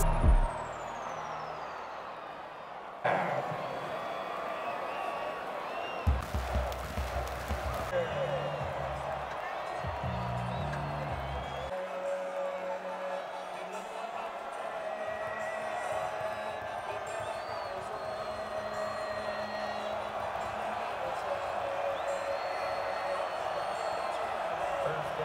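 Football stadium crowd noise: a steady din of many overlapping voices, with an abrupt change about three seconds in and low thumps between about six and twelve seconds.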